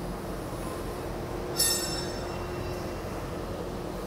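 Flange roll forming machine line running with a steady mechanical hum. About one and a half seconds in there is a brief high metallic squeal.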